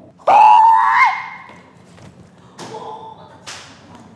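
A child's loud, high-pitched yell, held for under a second, as he throws a paper ninja star, followed by a few softer giggles and breaths.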